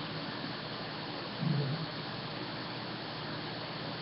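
Steady low hiss of room tone with a brief low hum about a second and a half in.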